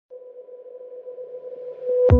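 Electronic intro music: a single held synth tone that swells steadily louder.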